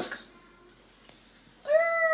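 A high, drawn-out pitched call begins about a second and a half in and holds nearly steady. Before it there is a short quiet stretch after a spoken word.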